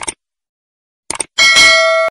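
Sound effects of a subscribe-button animation: a short mouse click, a few more quick clicks about a second in, then a bright notification-bell ding that rings for under a second and cuts off suddenly.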